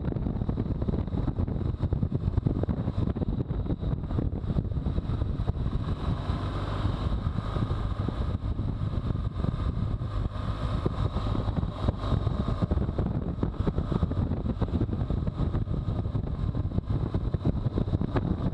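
BMW R1200GS boxer-twin engine running under way, mixed with steady wind noise on the microphone as the motorcycle rides along and slows for a curve.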